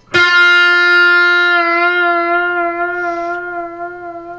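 A single pre-bent note on an electric guitar, picked once just after the start and left ringing. The bend is slowly eased down a little and pushed back up, giving a slow vibrato, and the note gradually fades.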